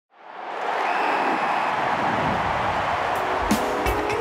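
Intro sting for an animated logo: a dense whooshing noise swells in over the first half-second and holds steady, then two sharp percussive hits land near the end.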